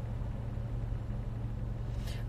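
Steady low hum of a car's running engine heard from inside the cabin.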